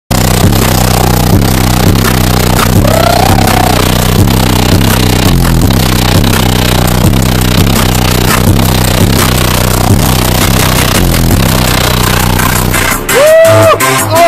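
Very loud, bass-heavy electronic music played through a high-power car-audio competition system inside a demo bus. About a second before the end it changes to a sparser passage with swooping synth tones.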